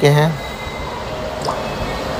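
Steady low background rumble after a brief spoken phrase at the start.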